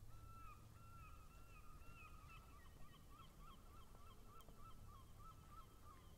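Near silence, with a faint, high, wavering call repeated over and over from a distant bird.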